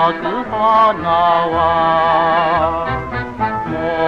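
A pre-war Japanese ryūkōka song played from an old record: a singer holds long notes with a marked vibrato over instrumental accompaniment, with the dull, narrow sound of an early recording.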